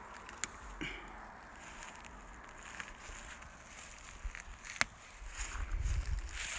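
Faint rustling as white pine needles are pulled from a branch by hand, with a couple of small sharp snaps, one near the start and one about two-thirds through. A low rumble builds near the end.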